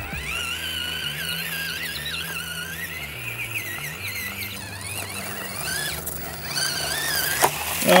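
Axial SCX24 mini RC crawler's small brushed electric motor and gearbox whining, the pitch wavering up and down with throttle and load as it climbs. Background music with a stepping bass line plays under it.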